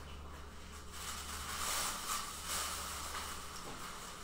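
Soft rustling and crinkling of tissue paper and cellophane being gathered up off-camera, swelling a little in the middle, over a steady low hum.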